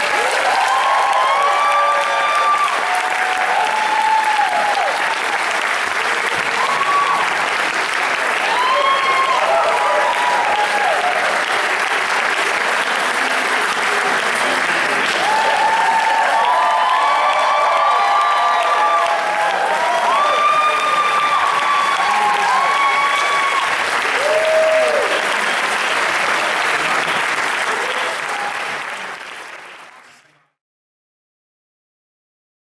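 Audience applauding with whoops and shouts over the clapping. The applause fades out near the end.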